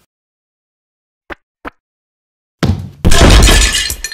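Two light taps, then a sudden loud crash-and-breaking sound effect of a small table being knocked over.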